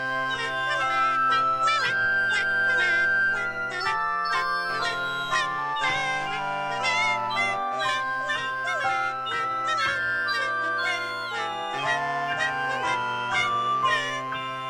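Cartoon birds' song played as music on reedy wind instruments: several voices sound together, some notes held long and others chirping in quick wavering trills.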